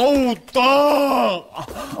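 A person's long, drawn-out groan of pain, about a second long, rising and then falling in pitch, after a short vocal sound at the start.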